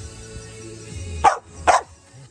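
A dog barking twice, short sharp barks about half a second apart, over background music.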